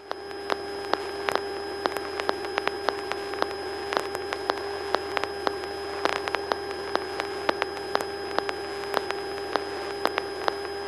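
Steady electronic hiss with a steady hum and irregular sharp crackling clicks, several a second, from the Cessna 172's radio and intercom audio feed. The hiss comes on suddenly at the start.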